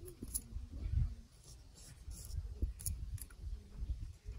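Straight razor scraping hair and skin at the sideburn and around the ear in short, irregular strokes.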